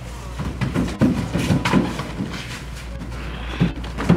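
Padded sparring: a few sharp thuds of gloved punches and kicks landing on protective gear, with scuffing footwork on the mat, over a steady low background hum.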